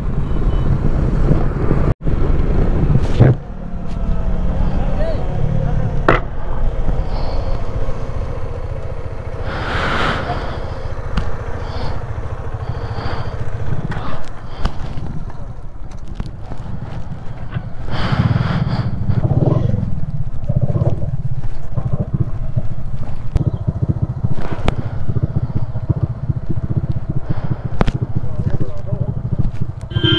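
Motorcycle engine running under the rider with wind noise on the camera microphone, the bike slowing to a stop and idling. The sound drops out briefly about two seconds in.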